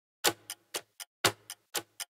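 Clock-ticking sound effect: sharp ticks about four a second, the strongest once a second, starting about a quarter second in, counting down the guessing time after the song snippet.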